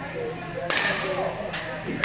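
A pitched baseball smacking into a catcher's mitt: one sharp pop about a third of the way in, then a fainter knock near the end.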